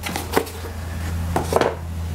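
A few sharp knocks and light cardboard handling as a boxed set of impact adapter tools is closed up and moved on a metal tool-chest top, over a steady low hum.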